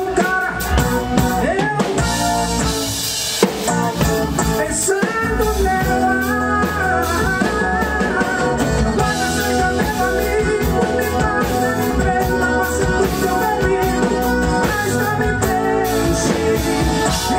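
Live forró band playing: a man singing into a microphone over accordion, acoustic guitar, electric bass and drum kit, with a steady beat.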